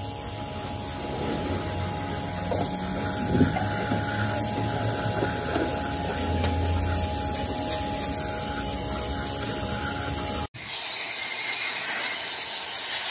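Pressure washer jet spraying a cylinder head: a steady hiss of water striking metal, with a steady hum under it. About ten seconds in it cuts off abruptly and gives way to a brighter rushing hiss of air from an electric blower.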